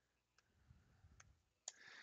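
Near silence with a few faint clicks, the clearest near the end.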